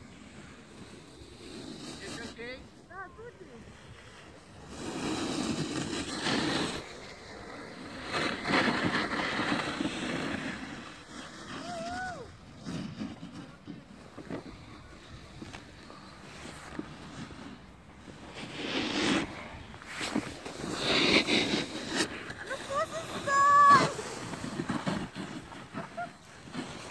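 Snowboard sliding and scraping over packed snow in several long swishes, the loudest a few seconds in, around ten seconds in, and again about twenty seconds in.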